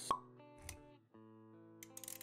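Intro music with sound effects: a sharp pop just after the start, the loudest thing, over held music notes, with a soft low thump shortly after and a brief drop-out near the middle.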